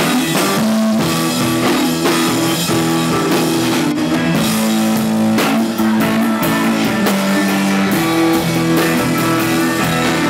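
Rock band playing live: electric guitar, drum kit and keyboard, with chords held for a second or two at a time over a steady beat.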